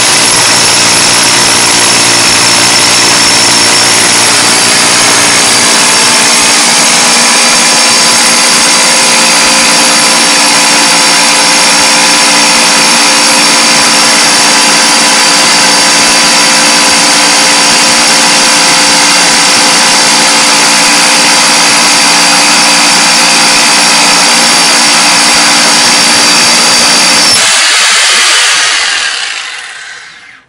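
A Bosch GBH 4-32 DFR 900 W rotary hammer drilling into a concrete block with a long spiral bit, running loud and steady. Near the end the motor is let off and winds down to silence.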